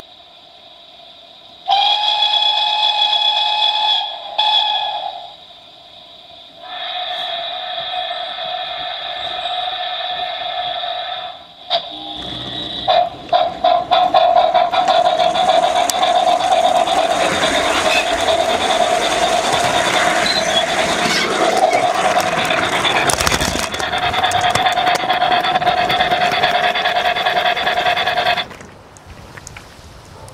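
O gauge model train running on curved track, with a long, steady, high whistling tone. The tone starts about two seconds in, breaks off twice and comes back, then runs over louder running noise through the second half before cutting off suddenly near the end.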